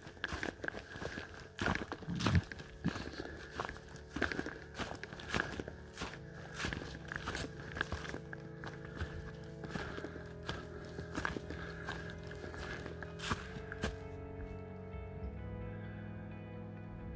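A hiker's footsteps through dry fallen leaves at a steady walking pace, about two steps a second. Soft background music with sustained notes comes in partway through and takes over near the end as the steps stop.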